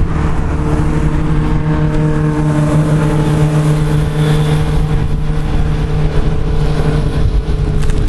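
An engine running at a steady, unchanging pitch, over a low rumble of wind on the microphone.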